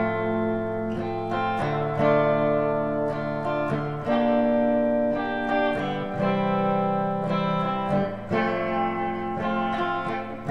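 Electric guitar playing the slow doo-wop verse chords F, D minor, G minor and C, each chord struck and left ringing, with a new strike every second or two.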